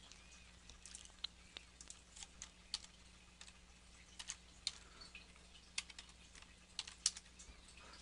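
Faint, irregular clicks of a computer keyboard and mouse, with single keystrokes and clicks spaced unevenly.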